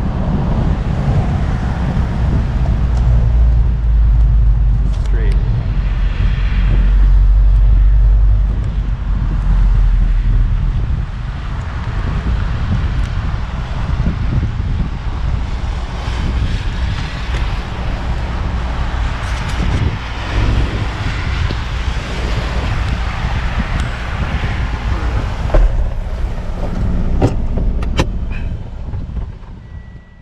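Mazda Miata driven with the top down on a wet road: wind buffeting the microphone and road and tyre noise, with heavy low rumble for the first ten seconds or so, then steadier and lighter. A few sharp clicks come in the last seconds before the sound fades out.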